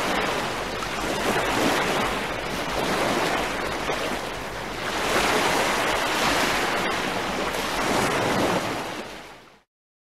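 A rushing, surf-like noise that swells and ebbs every few seconds, then fades out quickly shortly before the end.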